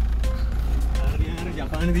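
Steady low rumble of a car heard from inside the cabin, with voices coming in just over a second in.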